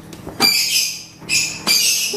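A flame-heated knife tip pushed into the wall of a thin plastic bottle, the plastic hissing and squeaking as it melts. It comes twice, about a second apart, each time a high hiss of about half a second.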